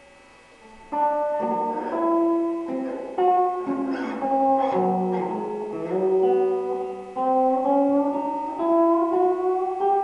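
A guitar played solo: a slow melody of plucked notes that ring on, starting about a second in. Near the end the notes slide upward in pitch.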